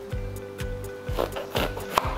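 Chef's knife slicing through a green bell pepper on a wooden cutting board, with a scraping cut about halfway through and a knock of the blade reaching the board at the end, over background music with a steady beat.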